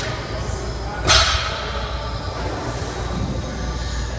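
Busy gym background of music and voices, with one short, sharp hissing burst about a second in.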